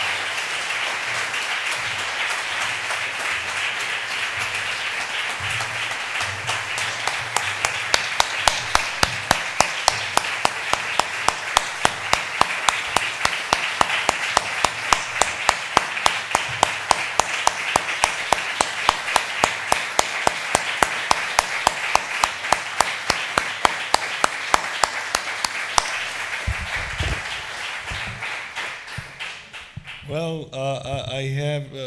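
Audience applause in a lecture hall. From about eight seconds in it settles into a steady rhythmic clapping in unison, a few claps a second, and it dies away near the end.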